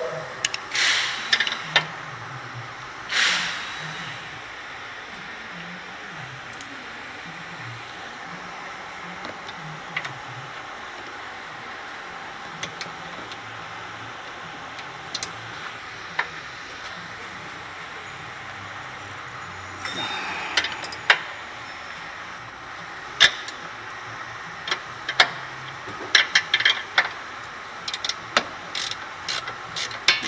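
Wrenches clicking and clinking on the front lower control arm bolts as they are worked loose. The clicks come in bunches near the start and through the last third, with steady shop background noise between.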